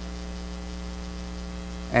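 Steady electrical mains hum: a constant low drone with higher overtones and a faint thin high tone above it.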